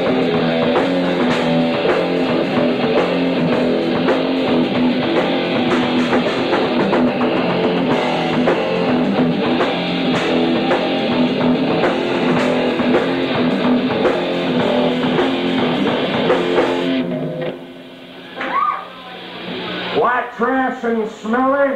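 Live rock band playing: distorted electric guitar over a drum kit with a steady beat. The band stops about three-quarters of the way through, and a man's voice comes in at the microphone near the end.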